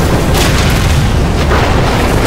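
Cinematic battle sound effects of a sea battle: heavy booms of cannon fire and explosions over a dense low rumble, with two sharp blasts, one about half a second in and another about a second and a half in.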